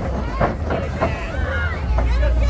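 People's voices calling out and talking in the open air around a wrestling ring, with wind rumbling on the microphone, heaviest near the end.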